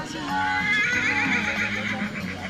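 A horse whinnying, a wavering call about a second long, over background pop music.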